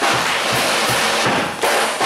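Jazz big band in which the horns drop out and the drum kit carries a short break of cymbals and kick drum, about four low thumps a second. The full band comes back in with a loud hit near the end.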